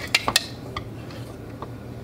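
Light metallic clicks and clinks as the small metal film clip of a LAB-BOX developing tank is picked up and handled: three sharp ones close together at the start, then a couple of fainter ticks.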